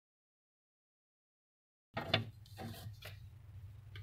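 Dead silence for about two seconds, then faint handling sounds: a few light knocks and clicks over a low hum as a glass dessert cup is set into a refrigerator.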